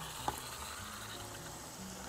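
Hot saffron water poured into a pot of meat, onion and carrots frying in oil, sizzling faintly, with a single light click about a quarter second in.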